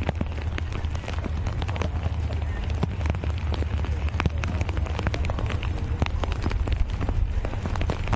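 Rain falling on umbrellas and the ground, heard as a dense crackle of many sharp drop taps over a steady low rumble of wind buffeting the microphone.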